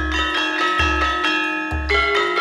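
Live Javanese gamelan: bronze metallophones and gongs ring out a melody of sustained, bell-like tones, over deep low strokes that come about once a second.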